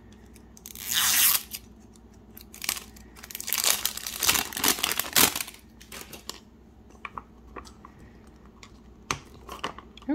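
Clear plastic shrink wrap being torn and peeled off a plastic capsule ball, crinkling: one burst about a second in, then a longer stretch of tearing and crinkling from about three to five seconds. A few light clicks follow near the end.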